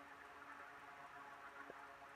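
Near silence: faint outdoor background with a soft steady hiss and a faint low hum.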